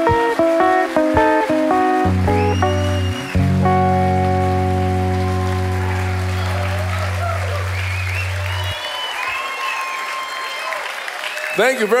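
Live guitar-led blues music plays its last notes and ends on a long held chord that stops abruptly about nine seconds in. The audience then applauds and cheers.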